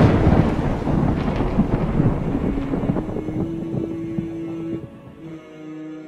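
A thunder sound effect rolling and slowly dying away. About five seconds in, a hummed nasheed melody begins.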